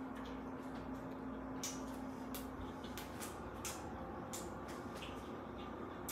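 Chewing a mouthful of chicken burrito close to the microphone: faint, irregular mouth clicks and smacks, about one or two a second. A faint steady hum runs underneath and stops about halfway through.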